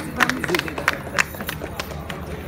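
Hand claps in a quick, uneven series of sharp strikes, over faint voices.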